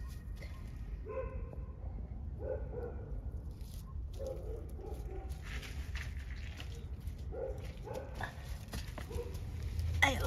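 Short animal calls, repeated about every second or so, over a steady low rumble.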